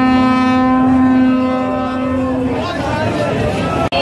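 A horn sounding one long, steady note for about two and a half seconds over the din of a crowd, then crowd shouting and chatter; the sound drops out for an instant just before the end.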